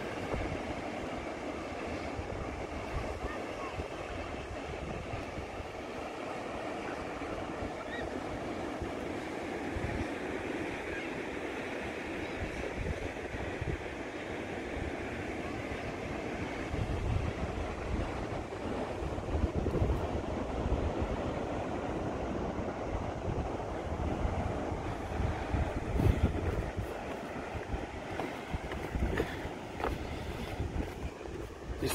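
Ocean surf breaking and washing up a sandy beach, a steady rushing sound. Wind buffets the microphone in gusts, more from about halfway on.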